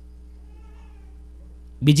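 A pause in a man's talk filled only by a steady low electrical hum from the microphone and sound system, then his voice starts again near the end.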